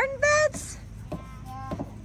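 A high-pitched voice sounds briefly at the start, then only faint short sounds over a quiet background.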